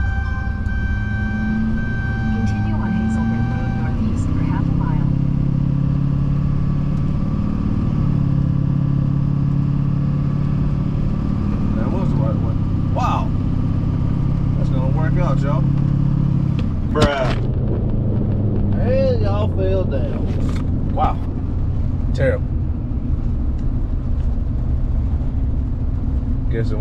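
Pickup truck engine and road noise droning inside the cab while driving, the engine note shifting up about four seconds in. A sharp knock comes about two-thirds of the way through.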